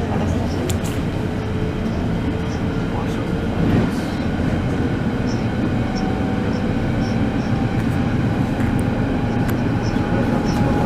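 Berlin S-Bahn Class 481 electric trains running past close by: a steady rumble of wheels on rail, with a faint steady whine and a few short clicks.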